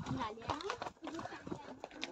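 Horses' hooves clopping at a walk on a stony trail, a string of irregular sharp knocks, with low voices alongside.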